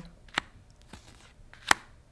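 Tarot cards being dealt onto a cloth-covered table: a light tap under half a second in, then a sharp, louder snap of a card laid down near the end.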